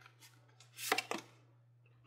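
Tarot cards handled in the hands: a short papery rustle of cards sliding against each other, building to two sharp snaps about a second in.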